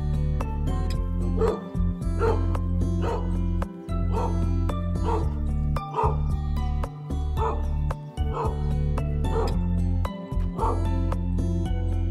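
A dog barking in short yips, about ten of them roughly a second apart, over steady background music.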